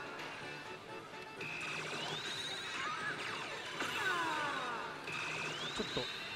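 Oshu! Bancho 4 pachislot machine playing its electronic music and sound effects: a run of falling swoops, a held high beep and a rising glide ending in a fast trill, repeating about every five seconds over the din of the hall.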